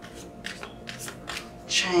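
Tarot or oracle cards handled in the hand: about four short papery flicks and snaps in the first second and a half. A woman's voice speaks a word near the end.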